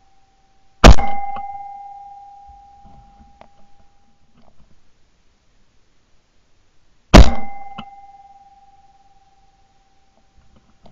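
Two shotgun shots about six seconds apart, fired at flying woodpigeons, each very loud report followed by a ringing tone that fades over two to three seconds.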